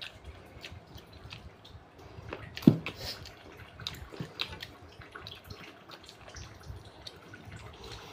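Close-up eating sounds: wet chewing and small mouth and lip smacks as chicken rendang and rice are eaten by hand, with one louder, brief sound about two and a half seconds in.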